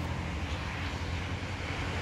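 Steady low rumble of distant engine noise, with a faint even hiss over it.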